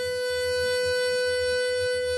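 Harmonica holding one long, steady note.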